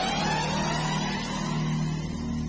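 GAZ Volga sedan's engine revving up as the car pulls away; its pitch rises and then levels off about a second in.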